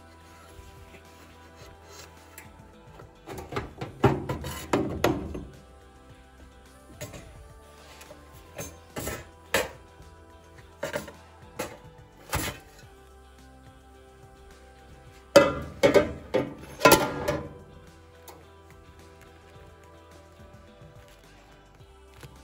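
Metal bread-machine pan being handled and knocked upside down on a wire cooling rack to free the baked loaf: a burst of clattering knocks about four seconds in, single knocks over the next several seconds, and a second burst about fifteen seconds in, over steady background music.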